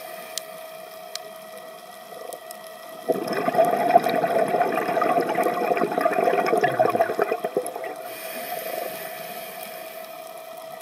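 Scuba diver breathing through a regulator underwater: a quieter stretch, then from about three seconds in, about five seconds of loud bubbling as exhaled air streams out of the regulator, over a steady faint hum.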